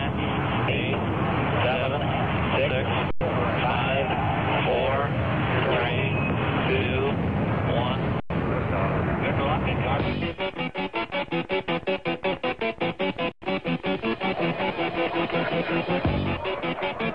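Produced radio sports-broadcast intro, heard over narrow-band AM radio: voice clips layered over a low rumble, then about ten seconds in it cuts to music with a fast, pulsing beat.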